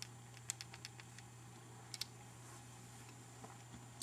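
Faint light clicks and taps of small plastic and circuit-board parts being handled, a handful of them with a close pair about two seconds in, over a low steady hum.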